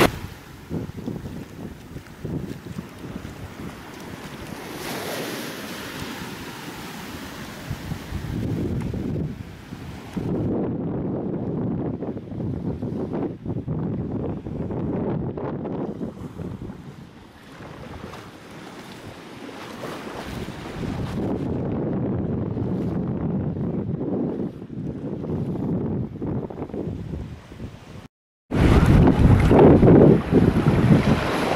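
Shallow sea water lapping and rippling with a gentle surf wash, mixed with wind buffeting the microphone, swelling and easing in level. Near the end the sound cuts out briefly, then returns louder.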